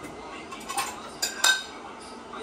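Dishes and cutlery clattering as they are taken from a dishwasher and put away, with a few sharp, ringing clinks, two close together about one and a half seconds in.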